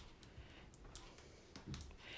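A few faint clicks and crackles of transfer tape being peeled slowly off the backing of a sheet of vinyl.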